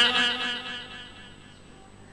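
The tail of a man's voice holding a drawn-out last syllable at a steady pitch, fading out over about a second, followed by faint steady background hum.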